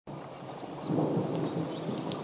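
Rain falling, with a low swell of thunder that grows louder about a second in. A few short high chirps sound faintly above it.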